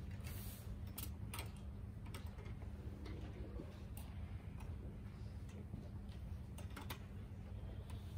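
Concert hall in a pause between pieces: a faint steady hum of the hall, with a few scattered small clicks and rustles from the seated orchestra and audience.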